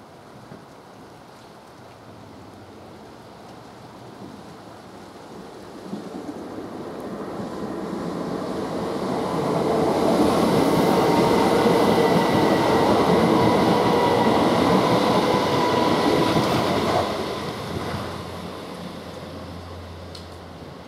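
A train running past, its rumble and steady whine building over several seconds, loudest midway, then fading a few seconds before the end.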